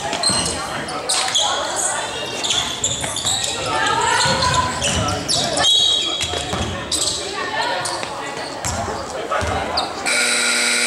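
Basketball bouncing on a hardwood gym floor during play, with repeated sharp knocks, amid the shouting voices of players and spectators in a large gymnasium.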